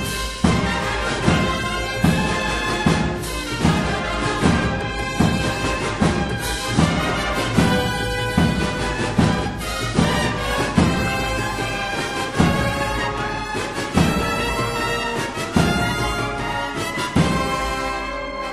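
Spanish Holy Week agrupación musical (cornets, trumpets, trombones, tubas and drums) playing a slow processional march. Held brass chords sound over a heavy drum beat about every 0.8 s.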